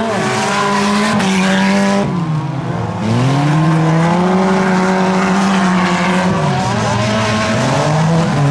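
Four-cylinder cars racing on a dirt track, their engines held at high revs. The revs fall about two seconds in, climb back up a second later, then dip briefly again near the end.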